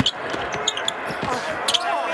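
Basketball dribbled on a hardwood court, a series of sharp bounces, with short high-pitched squeaks among them.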